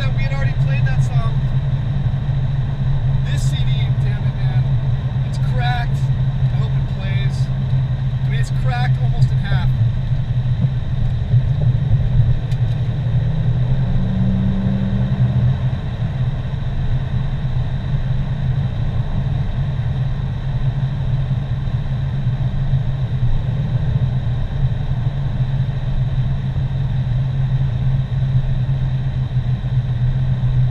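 Steady low drone of a car's engine and tyres heard from inside the cabin while driving along a highway. Brief snatches of a voice break in over the first ten seconds or so.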